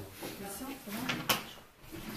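Faint voices in the room, with one sharp knock about a second and a quarter in.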